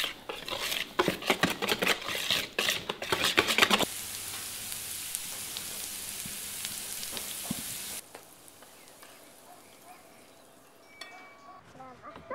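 A wire whisk beating pancake batter in a plastic bowl, with rapid clattering strokes. About four seconds in, pancakes start sizzling in a nonstick frying pan; the sizzle cuts off suddenly about eight seconds in.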